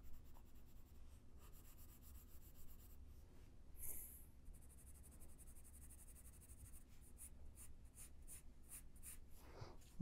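Faint scratching of a pencil shading on paper in short, repeated strokes. The strokes come quicker and closer together in the last few seconds.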